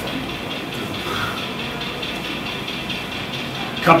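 Steady, even engine sound from a model diesel locomotive's TCS WOWDiesel sound decoder playing through its small speaker, with no sharp events.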